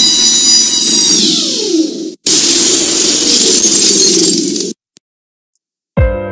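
Cartoon crash sound effect of a car dropped from a forklift: two long, loud bursts of smashing and breaking glass, the first with a high whistling tone that falls in pitch, each cutting off abruptly.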